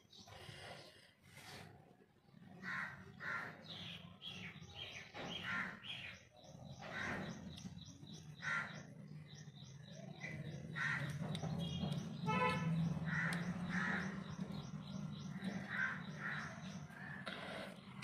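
Birds calling over and over, short calls about one a second, with a low steady hum underneath that grows stronger after about five seconds.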